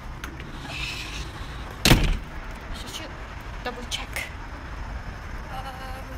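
A door shut with one loud bang about two seconds in, with rustling and a few light clicks around it.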